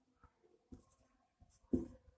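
Marker pen writing on a whiteboard: faint, scattered strokes, with one brief louder sound near the end.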